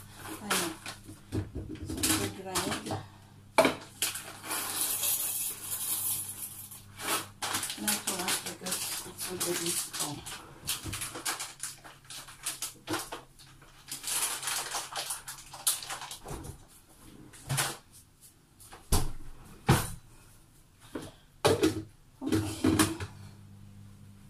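Crinkly rustling and a string of small clicks and knocks as a bag of coffee beans and the grinder are handled on the counter, with two longer rustles a few seconds in and about halfway through.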